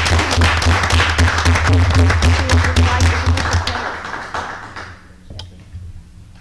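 Audience applauding in a meeting room, dying away about four seconds in, with a short laugh near the end.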